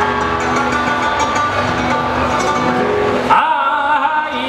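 Flamenco guitar playing between sung phrases over a steady low rumble of background noise. A male flamenco singer's voice comes back in strongly near the end.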